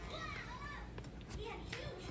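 Faint children's voices in the background, high and rising and falling.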